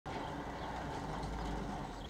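A car driving past, a steady low engine and tyre noise that swells slightly toward the end.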